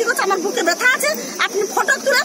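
A woman speaking in an upset voice, over a steady high hiss.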